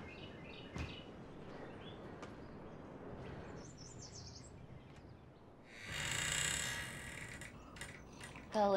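Quiet ambience with faint bird chirps, then about six seconds in a louder creak lasting about a second as a door swings open.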